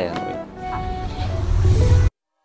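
A car engine rumbling and growing louder, under soft background music with held notes.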